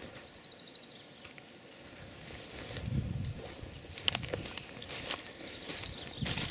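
Footsteps through dry, flattened grass, getting louder from about two seconds in, with faint small-bird chirps: a short quick trill near the start and a few single chirps around halfway.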